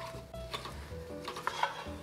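Wooden spoon stirring and scraping diced onions and dry spices around a stainless steel pot, toasting the spices with the onions.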